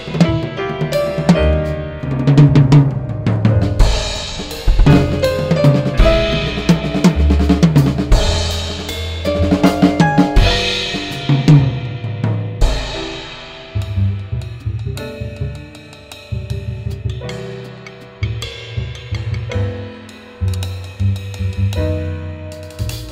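Drum kit played busily, with snare, kick and crashing cymbals, in a live acoustic ensemble. About thirteen seconds in the playing drops back and low upright double bass notes come forward under lighter drumming.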